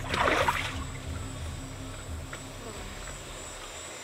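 A short, loud splash of river water right at the start as a body moves in waist-deep water, then quieter lapping and trickling water.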